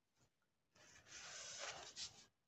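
Near silence, then a faint rubbing rustle lasting under a second, starting about halfway through.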